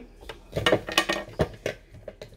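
Markers clattering and clicking against each other in a bowl as a hand rummages through them: a quick, uneven run of clicks through the middle of the clip.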